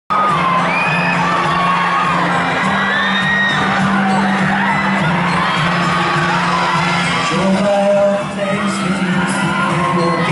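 Live concert recording of a pop-rock song's intro: steady sustained instrumental notes under an audience of fans screaming and cheering, with many short high-pitched shrieks rising and falling.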